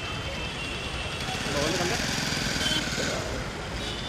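Motorcycle engine passing close over busy street traffic, growing louder about midway and easing off toward the end, with people's voices talking in the background.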